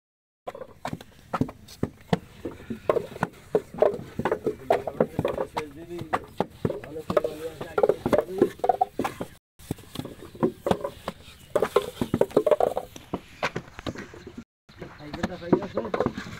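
People talking over frequent sharp knocks and slaps of wet clay and wooden brick moulds from hand brick-making, irregular and several a second. The sound cuts out briefly twice.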